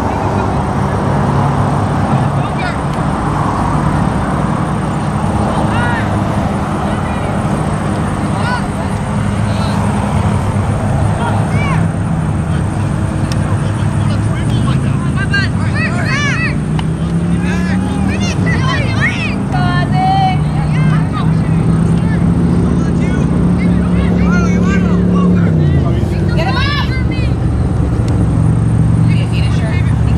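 A steady low motor drone that rises and falls in pitch a few times, with short shouts and calls from players on a soccer pitch scattered through it, most of them in the second half.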